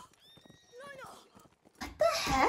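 Faint horse whinny in an anime soundtrack, a pitched call that wavers and falls about a second in, with scattered hoofbeat-like ticks. A woman's voice starts loudly just at the end.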